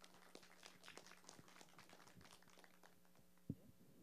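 Faint applause from a small seated group: scattered hand claps that thin out and stop about three seconds in, followed by a single sharp knock.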